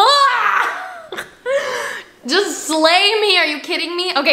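A woman's excited wordless vocal reaction: a loud whoop rising sharply in pitch, then a few shorter breathy exclamations and laughing sounds with wavering pitch.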